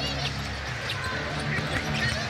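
Basketball being dribbled on a hardwood court, with the arena crowd murmuring underneath, during a live NBA game; a few short high squeaks sound near the start.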